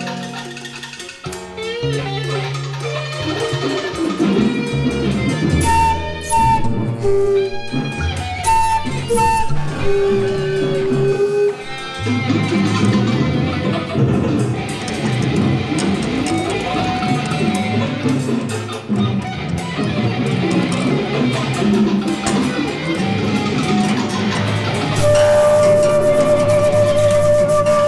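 Free jazz improvisation by a quartet of electric guitar, balalaika, keyboard and flute, with the plucked strings busiest. The playing grows denser about halfway through.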